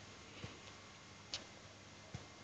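Quiet room tone with two faint, brief clicks: a soft low knock about half a second in and a sharper, higher tick a second later.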